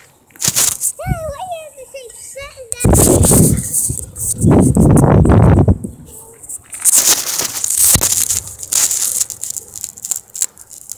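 Handling noise from a phone's microphone as it is touched and moved: loud rubbing and crackling, heaviest from about three to six seconds in and again around seven to nine seconds, after a couple of clicks and a short stretch of voice at the start.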